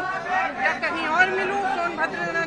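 Speech only: voices talking, with several people speaking at once in a crowd.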